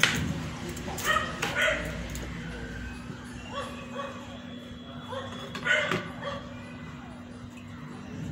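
A kitchen knife slicing a vegetable on a plastic cutting board, a few sharp taps of the blade on the board. Short high-pitched yelping calls come in around a second in and again near six seconds, over a steady low hum.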